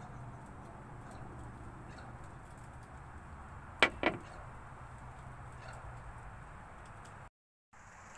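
Quiet, steady low hum of background noise, broken about four seconds in by two short, sharp knocks close together. The sound cuts out completely for a moment near the end.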